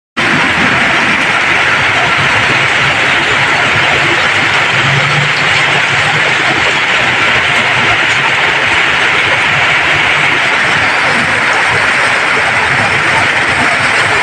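Heavy rain falling steadily, a loud even hiss. Under it are the sounds of vehicles driving through a flooded street.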